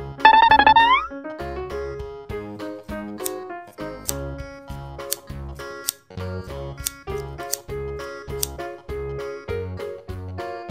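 Cheerful keyboard background music with a steady beat. Shortly after the start, a loud high-pitched sound effect plays for under a second, its pitch rising at the end.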